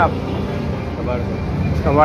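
Steady low rumble of street traffic, with a man's voice at the start and again near the end.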